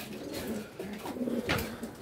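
Domestic pigeons cooing softly, with one short sharp knock about one and a half seconds in.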